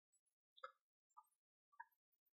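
Near silence, broken by three faint, brief sounds about half a second apart.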